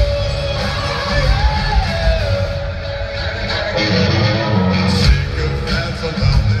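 Live rock band playing through a concert PA, recorded from within the crowd: guitars and drums with a vocal melody.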